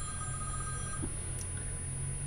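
A faint steady tone at two pitches held together, cutting off about a second in, over a low steady hum.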